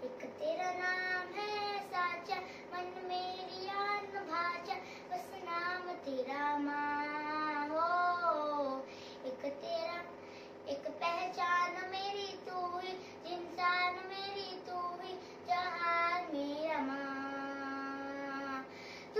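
A young girl singing solo, in phrases with held notes that bend up and down in pitch, separated by short breaths.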